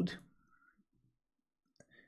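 A single short mouse click near the end, made while clicking through a web page, after a spoken word trails off; in between, near silence.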